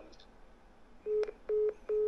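Three short, even beeps on one steady pitch from a phone, about half a second apart and starting about a second in: the tone that a phone plays when a call has ended.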